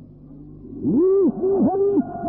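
A human voice making a run of drawn-out calls, each rising and falling in pitch, starting about a second in over a steady low hum.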